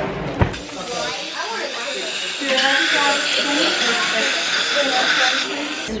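A knock about half a second in, then a steady hiss of compressed air from a dental instrument at the teeth, starting about a second in and cutting off just before the end, strongest in the middle.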